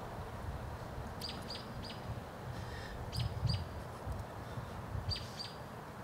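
A small bird chirping in short, sharp notes that drop in pitch, in quick groups of three, then two, then two, over a steady low rumble.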